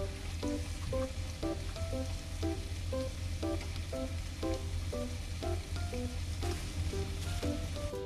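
Pork offal (horumon) sizzling steadily on a hot ridged dome grill plate as it is turned with tongs. Light background music of short, plucked-sounding melodic notes plays over it.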